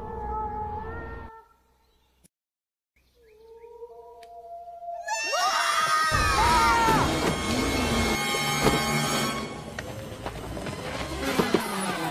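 Cartoon soundtrack excerpts: a wavering, howl-like call that stops about a second in, a short stretch of near silence, more wavering calls, then from about five seconds a loud, dense scene of screams and rumbling over orchestral music.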